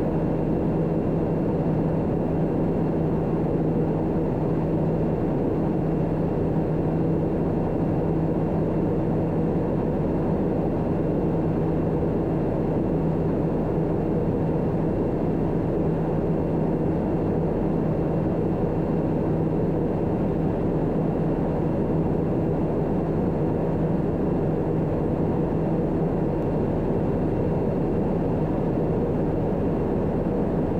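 Daher TBM 960 in flight: the steady drone of its Pratt & Whitney PT6E turboprop engine and five-blade propeller, heard in the cabin, with a constant low hum and no change in pitch or level.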